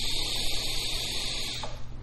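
Steady hiss of air being drawn through a Morpheus V2 vape tank during a long inhale, stopping about three-quarters of the way in. The draw is tight: the tank's narrow chimney restricts the air despite its large airflow holes.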